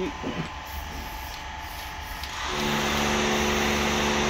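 A steady mechanical drone with a hiss cuts in about two and a half seconds in and holds one unchanging pitch, over a low hum.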